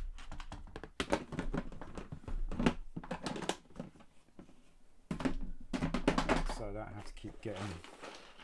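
Loose Lego Technic pieces clicking and rattling in a clear plastic parts tray as it is handled, in two bursts of quick clicks.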